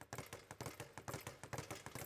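Speed bag being punched with arcing side punches, the bag rebounding off its overhead platform in a fast, even run of faint taps, many a second.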